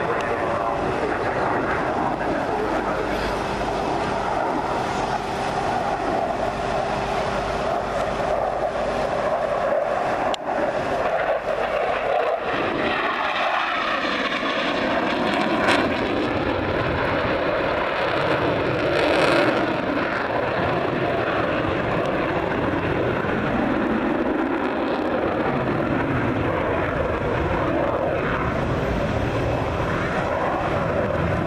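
A military jet flying a display, its engine noise a steady, loud roar. About halfway through, the tone sweeps in pitch as the jet passes, and the sound swells briefly soon after.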